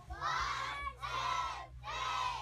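A group of children shouting together in unison: two loud shouts about a second apart, with a third starting at the end.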